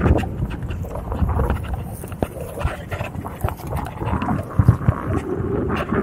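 A bike rattling and knocking as it rolls over a rough, grassy dirt trail, with irregular clunks and clicks throughout.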